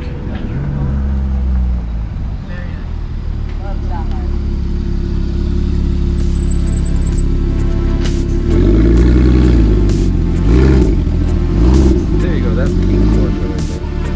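A car engine rumbling, then revved in several quick blips from about halfway through, its pitch rising and falling with each blip.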